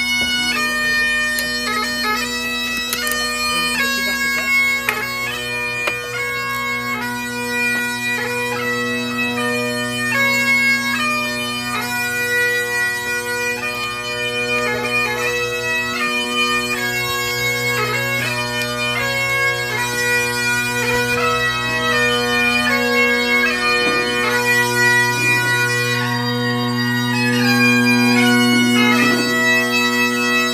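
Bagpipes playing a melody over steady, unbroken drones.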